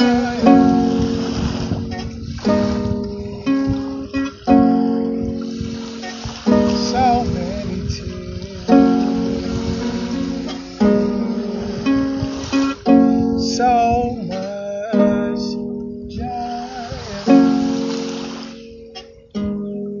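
Small wooden harp plucked by hand, a new chord struck about every two seconds, each ringing and fading before the next.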